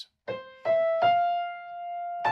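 Grand piano: three single melody notes played in quick succession, stepping up the chord, with the last one left ringing.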